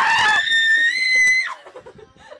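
A teenage girl's high-pitched scream, held for about a second and a half with its pitch rising slightly, then breaking off and dropping away. Quieter voices follow.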